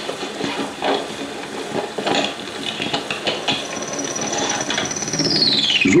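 A school satchel being packed: a run of irregular knocks, rubs and clicks as things go into it. From about halfway a high whistle sets in, holds, then glides steadily down in pitch near the end.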